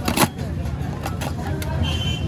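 Steady low rumble of street traffic and voices, with a sharp metallic clack just after the start and a few lighter clicks after it, as the paan vendor handles small steel containers.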